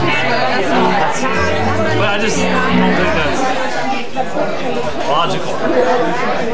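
Electric bass guitar playing a few loose, held low notes with no drums behind it, under steady crowd chatter in a bar. The bass stops about halfway through and the talk carries on.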